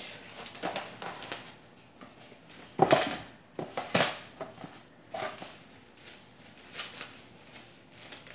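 Plastic cling wrap crinkling and rustling as it is handled: scattered irregular crackles, the loudest about three and four seconds in.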